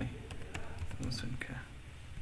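Computer keyboard keys clicking through a short run of keystrokes, with faint mumbled speech about a second in.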